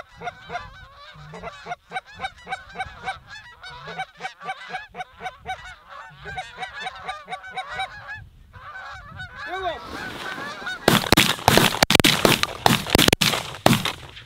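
A flock of Canada geese honking in flight, a rapid run of overlapping honks. From about ten seconds in, a louder rushing noise with sharp cracks takes over.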